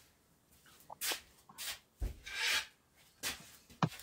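Wooden boards being handled: a few short scrapes and rubs of wood on wood, a dull thump about two seconds in, and a sharp click near the end.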